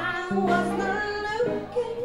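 A woman singing live into a microphone over band accompaniment, her melody sliding up and down over steady held bass notes.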